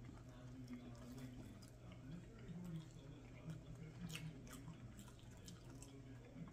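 Very faint chewing and wet mouth clicks of someone eating a soft slider, over a steady low hum; close to silence.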